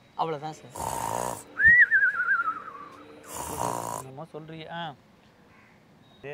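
A man snoring: a rasping snore, then a wavering whistle that falls in pitch, then a second rasping snore.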